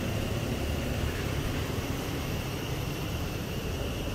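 Small wheeled shopping cart being pushed along, its wheels rolling across the floor in a steady low rumble.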